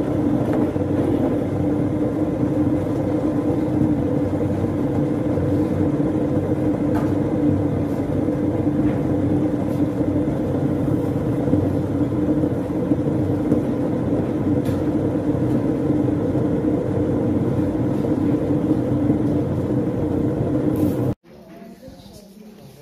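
An electric hot-water dispenser running as it fills a mug: a loud, steady machine hum over a rush of water. It cuts off suddenly near the end.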